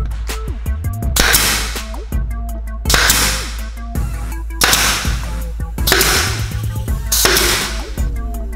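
Pneumatic brad nailer firing five times, about every one and a half seconds, each shot a short burst of noise with a rush of air. Background music plays throughout.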